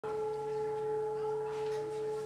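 A single steady held tone with a few overtones, unchanging in pitch or loudness.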